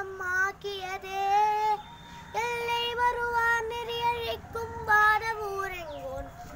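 A boy chanting a Tamil devotional sloka in a sung style, in long held notes broken into short phrases, the pitch stepping up a little over two seconds in.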